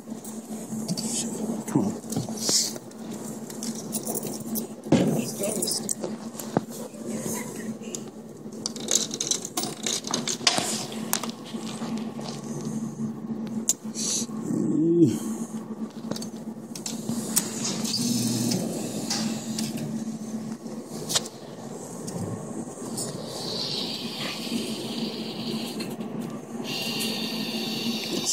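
Arcade ambience: a steady electrical hum with scattered clicks and knocks and background voices, and high electronic game tones coming in about 23 seconds in.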